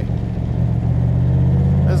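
Roush 427 cubic-inch stroker V8 of a Backdraft Racing Shelby Cobra replica running through its stainless side pipes as the car drives along, a steady deep exhaust note that swells slightly in the second half.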